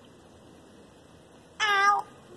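A single short, high-pitched cry near the end, after faint background.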